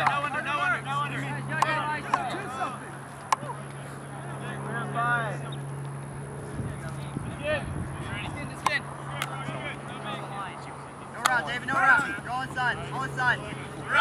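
Players' voices calling and shouting across an outdoor field during an ultimate frisbee point, over a steady low hum, with a few sharp clicks in between.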